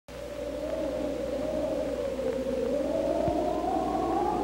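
Old film soundtrack: a single sustained tone slowly wavering up and down in pitch, over a steady low hum.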